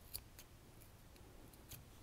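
Scissors snipping yarn tails close to woven fabric: a few faint, sharp snips, the clearest just after the start, another soon after and one more near the end. The blades could do with a sharpening.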